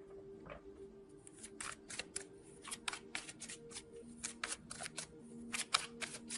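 Tarot cards being shuffled by hand: a run of quick, irregular soft clicks and flicks, several a second.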